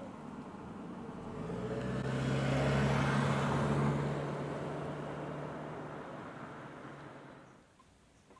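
A motor vehicle driving past: the noise swells over a couple of seconds, is loudest around the middle with a steady low engine hum, then fades away shortly before the end.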